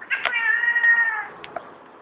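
Angry domestic cat giving one drawn-out meow, about a second long and steady in pitch.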